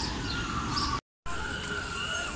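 Outdoor ambience: a steady background hiss with birds chirping and a few thin gliding whistles. The sound cuts out for a moment about halfway through.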